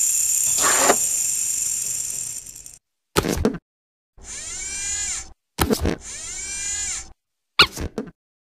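Sound effects for an animated logo intro in which a mechanical claw arm grabs a logo: a long hiss that fades out over the first three seconds, then short sharp knocks alternating with two mechanical whirring sweeps of about a second each.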